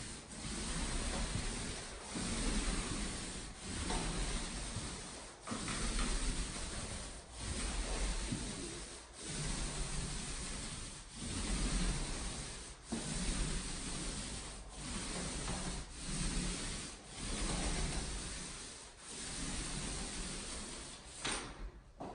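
Paint roller on an extension pole rolling over drywall with light pressure, a rubbing swish in repeated up-and-down strokes about every one and a half to two seconds. The nap is pre-wet and loaded with paint.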